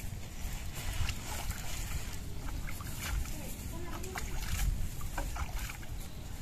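Steady low rumble of wind buffeting the microphone, with scattered light rustles and clicks from the handling of the animal on the dry grass.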